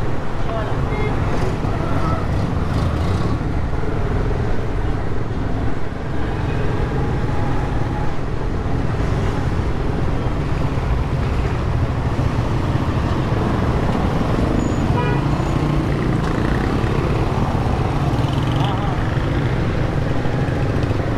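Slow-moving traffic in a narrow street: a steady low engine rumble from vehicles crawling along, with indistinct voices in the background.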